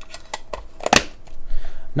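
Small metal tobacco tins being handled and set down on a table: a few sharp clicks and knocks, the loudest about a second in.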